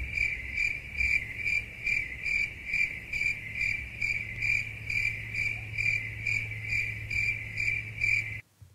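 Crickets sound effect: an even, high chirping repeated about two and a half times a second, starting and stopping abruptly, over a low steady hum.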